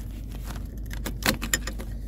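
Steady low rumble with a few short clicks about a second in.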